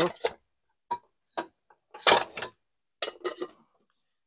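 Metal camping pots and a detachable pot handle clinking and knocking as they are set down and stacked in a plywood cookware box. There are a few separate knocks, the loudest clatter about two seconds in, then a quick run of light clicks.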